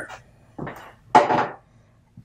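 Hard plastic packaging handled and set down: two short clattering knocks, about half a second and a second in, the second louder.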